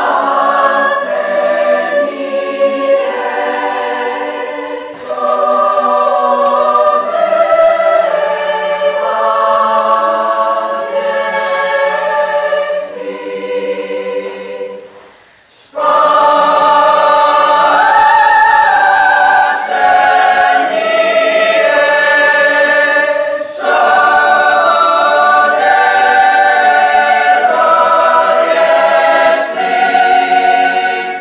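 Mixed-voice student choir singing sustained chords in harmony. The singing stops briefly just before halfway, then comes back in louder and holds.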